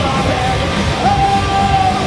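A pop-punk band playing live, with electric guitars, bass and drums under a shouted, sung lead vocal that holds long notes.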